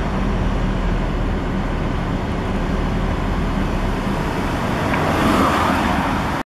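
Steady street traffic noise, with a vehicle passing a little louder near the end.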